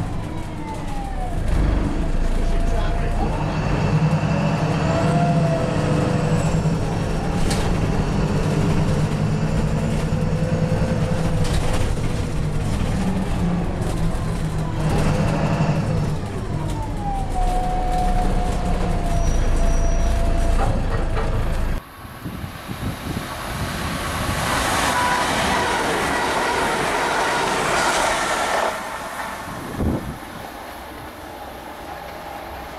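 Bus diesel engine running with a deep hum, heard from inside the bus, while a drivetrain whine slides down in pitch twice. After a sudden cut about two-thirds of the way through, a train's rushing wheel-and-rail noise swells and fades.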